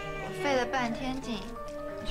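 A drama soundtrack: background music holding a steady chord, with a voice speaking over it.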